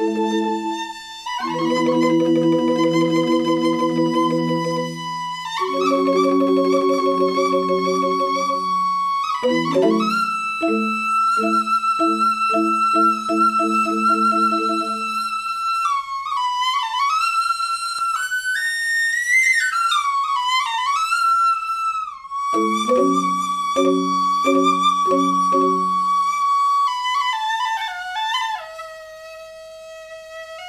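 Balinese suling bamboo flute playing a held, ornamented melody that slides between notes, over two rindik bamboo xylophones. The rindik play in stretches of rapidly repeated strikes, then drop out around halfway and again near the end, leaving the flute alone.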